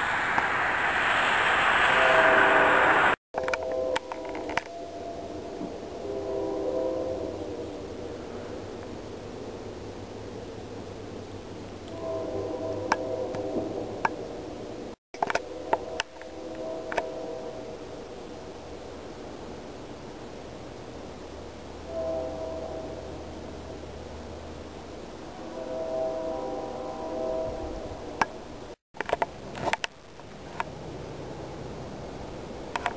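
Distant diesel locomotive's Nathan K3LA three-chime air horn blowing a series of long blasts and a shorter one, the warning for grade crossings. A loud rushing hiss fills the first three seconds, and the sound cuts out abruptly three times.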